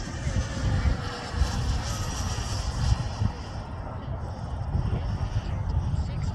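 The 100 mm Wemotec electric ducted fan of a Black Horse Viper XL RC model jet, running in flight as the model passes overhead: a steady rush with a thin high whine. Gusty wind rumble on the microphone lies underneath.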